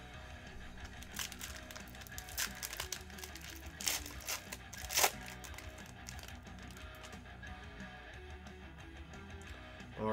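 Foil trading-card pack wrapper crinkling and tearing open in a few sharp crackles, the loudest about four and five seconds in, over quiet background music.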